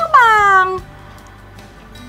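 A woman's voice drawing out one word with exaggerated intonation, its pitch gliding down over the first second. Then only faint, steady background music remains.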